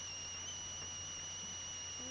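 Steady high-pitched electronic whine over a low hum and faint hiss: the recording's own background noise in a pause with no other sound.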